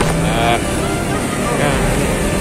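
A person speaking briefly over a steady low background rumble of outdoor noise.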